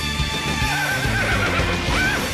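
Music from the song's soundtrack, with a horse whinnying over it: a long quavering call that starts about half a second in.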